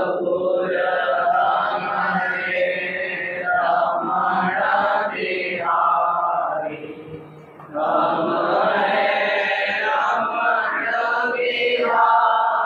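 Devotional chanting of Hindu mantras and divine names, a held, melodic recitation that pauses briefly about seven seconds in and then resumes.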